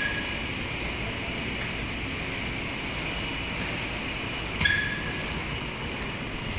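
Steady air-conditioning noise in a large tiled hall. A single short, sharp sound with a brief tone cuts in about three-quarters of the way through.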